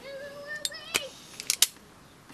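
Automatic wire stripper squeezed and released on a laptop charger cable to strip its outer insulation: a steady squeaking tone for about a second, then a few sharp clicks of the tool's jaws.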